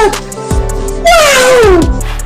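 A man's voice letting out long, falling cries over background music, one trailing off at the start and another about a second in that slides down in pitch.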